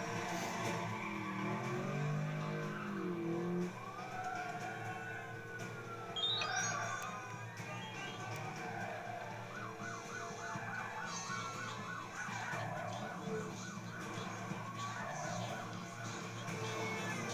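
A siren over music: it rises and falls slowly once, then switches to a fast, even warble.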